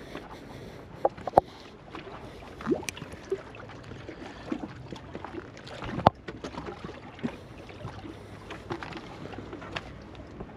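Small waves lapping against a rock wall, broken by scattered sharp clicks and knocks, the loudest about six seconds in.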